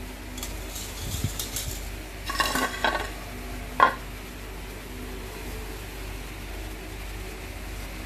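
A ceramic dinner plate being set down and shifted on a stone floor: a few scrapes and light knocks in the first three seconds, then one sharp ringing clink about four seconds in, and after that only a faint steady hum.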